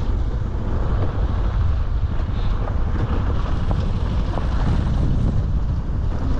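Wind buffeting the microphone of a moving vehicle's camera: a steady low rumble at an even level.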